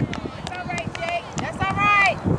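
Players and spectators shouting across a soccer field, with a stronger drawn-out call near the end, over scattered light knocks.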